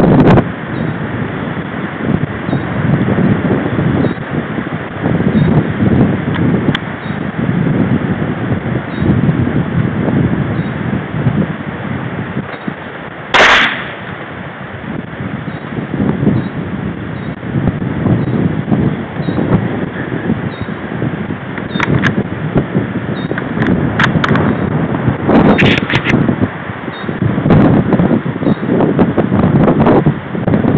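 Wind buffeting the microphone throughout, with a single sharp shot from a .17-calibre rifle near the middle. A few fainter clicks follow later on.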